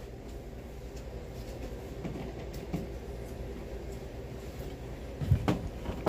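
Steady low hum and whoosh of an electric fan left running for white noise. A few faint clicks and a low thump near the end come from plugs and cords being handled.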